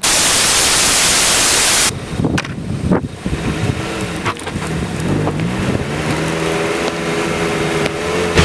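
A loud burst of TV-static white noise cuts off suddenly about two seconds in. A longboard follows, with a few sharp knocks as the rider pushes off, then its wheels rolling on asphalt over wind on the microphone. Low held tones, slowly rising in pitch, build through the second half.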